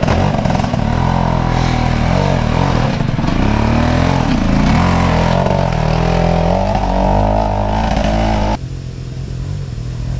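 Off-road trials motorcycle engine running hard as the bike climbs a section, its pitch rising and falling again and again as the rider works the throttle. About eight and a half seconds in, the sound cuts abruptly to a quieter, steadier engine note.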